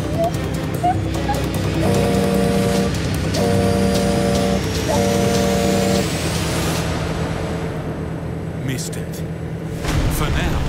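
Truck horn sounded in three blasts of about a second each, over the steady drone of the road train's engine. The blasts warn kangaroos off the road ahead.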